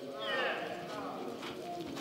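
A person's brief high gliding call or whoop, loudest about half a second in, over faint background voices.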